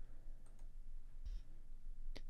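Quiet pause with a faint low hum and a couple of faint clicks.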